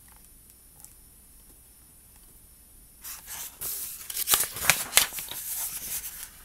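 Pages of a hardcover picture book being turned and handled: quiet for the first half, then paper rustling and small clicks of the book being handled from about halfway in.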